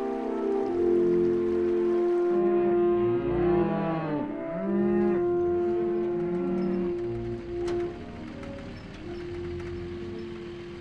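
Cattle mooing, with a couple of long, drawn-out moos around the middle, over background music with long held notes.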